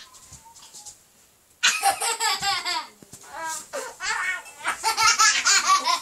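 A young child laughing loudly in repeated bursts while being lifted and held upside down, starting about a second and a half in after a quiet moment.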